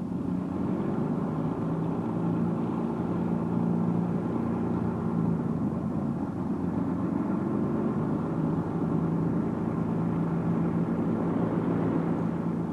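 Convair XFY-1 Pogo's turboprop engine and contra-rotating propellers running with a steady drone during a vertical descent to land.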